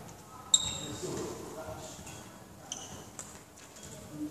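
A badminton racket striking a shuttlecock about half a second in: a sharp crack with a brief ringing ping from the strings, followed by two fainter hits near the end. A voice is heard in between.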